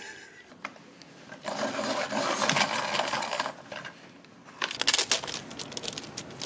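Ice cubes rattling and clinking inside a plastic tumbler of iced coffee, with about two seconds of steady rattling and then a short flurry of sharp clicks near the end.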